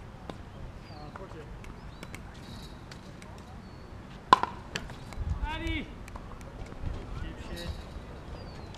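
A paddle hitting a ball once with a sharp pop about four seconds in, the loudest sound here. A short voiced call follows.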